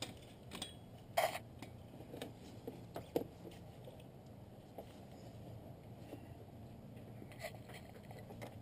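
Faint, scattered clicks and taps of a battery cable clamp being handled and fitted onto the negative battery terminal, the clearest click about a second in and another near the middle.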